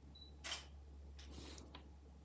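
Near silence: a steady low hum of room tone, with one faint brief hiss about half a second in.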